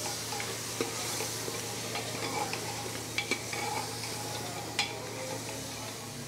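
Mutton pieces sizzling as they are dry-fried with spices (bhuna) in an open aluminium pressure cooker while a ladle stirs them, with a few scattered clicks and scrapes of the ladle against the pot.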